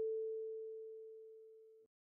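A single kalimba note on the A4 tine rings out and fades away evenly, then cuts off suddenly near the end.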